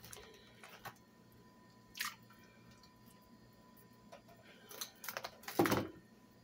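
Handling noises of a clear plastic meat package: scattered clicks and crinkling as raw chicken thighs are tipped from it into a slow cooker, with a short burst about two seconds in and the loudest run of crackling near the end.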